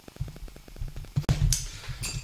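A few low thumps with two sharp clicks about a second and a half in, over a fast, faint, even ticking.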